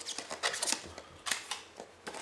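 Phone box packaging being handled: a scatter of light clicks and rustles of cardboard and paper as items are lifted out of the box and set aside.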